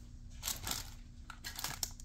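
Faint handling sounds as a glazed ceramic T-Rex figurine is picked up off a tabletop: soft rustling and a few light clicks.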